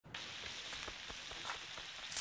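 Squid on skewers sizzling over a charcoal grill: a steady crackling hiss with faint, scattered pops.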